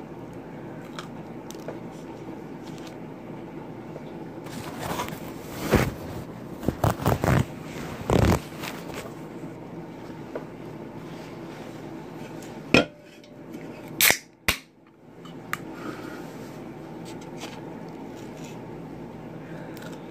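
Steady hum of a fish tank, with eating and plate-handling noises over it: a cluster of louder rustling, knocking bursts in the middle, and a few sharp clicks later on.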